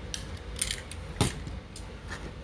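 Used cutter blades handled for disposal: about four sharp metallic clicks and light rattles, the loudest a little past halfway.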